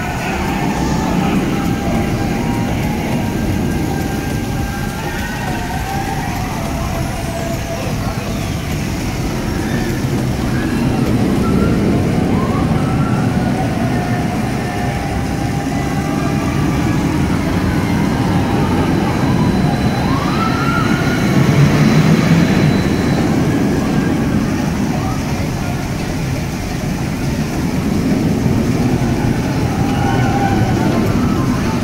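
Steel roller coaster trains running on the dueling tracks overhead, a continuous rumble that swells twice as trains pass, with people's voices and calls over it.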